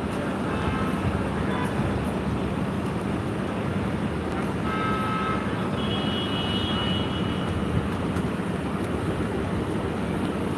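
City street traffic: a steady rumble of vehicle engines and tyres with a constant low hum, and a brief high-pitched squeal about halfway through.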